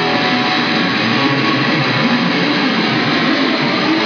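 Loud, heavily distorted electric guitar played through an amplifier: a dense, noisy wall of sound with a wavering pitch low down rather than clear chords.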